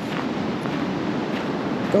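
Steady wash of sea surf breaking on the shore, with wind on the microphone.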